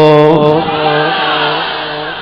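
A man's voice holding one long drawn-out chanted note, its pitch bending slightly, fading towards the end.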